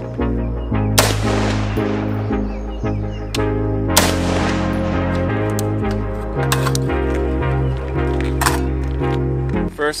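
Rifle shots from a lightweight AR-15 over background music. Two loud shots, about a second in and about four seconds in, each ring out for a moment, and a few sharper, shorter cracks follow in the second half.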